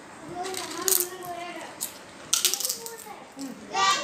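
Thin fried chips crackling in a plastic tub as a hand grabs some, in two short crisp bursts: one about a second in and one past two seconds.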